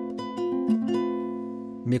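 Classical guitar with a capo sounding an A minor chord with added ninth and augmented fifth: a few notes plucked one after another in the first second, then left ringing together.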